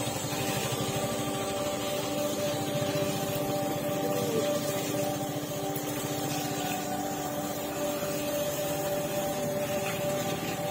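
Small single-cylinder motorcycle engine running steadily at low speed with a rapid, even pulse and a steady hum, as the bike creeps along a rough, muddy lane.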